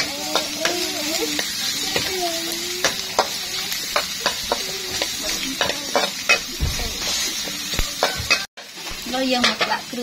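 Sliced lemongrass and chilies sizzling in oil in a metal wok while a metal spatula stirs and scrapes them, giving a steady sizzle with irregular clicks and scrapes of metal on metal. The sound cuts out briefly near the end.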